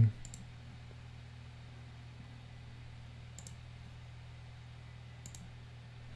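Three brief computer mouse clicks, spaced a second or more apart, over a steady low electrical hum.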